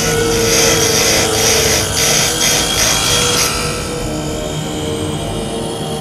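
A spinning grinding wheel cutting into a lump of amber, a high grinding hiss that comes in short pulses about twice a second and stops about three and a half seconds in. Steady orchestral music plays underneath throughout.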